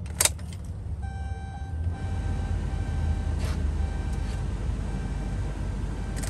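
Keys click in the ignition of a Chevrolet Silverado 2500HD with the Duramax diesel as it is switched on with the engine off. From about a second in there is a thin steady electrical whine, fainter after a second or so, over a low steady hum.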